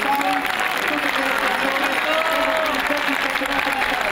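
Crowd applauding steadily, with a voice heard under the clapping.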